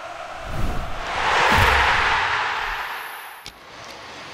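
Channel intro ident sting: a rush of noise swells to a peak about a second and a half in, with a couple of low thuds, then fades away.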